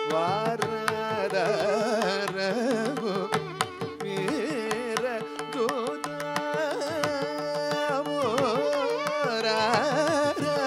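Carnatic vocal music in raga Mayamalavagowla: a male voice sings with wavering, ornamented pitch, shadowed by violin, over a steady drone, with mrudangam drum strokes keeping Adi talam throughout.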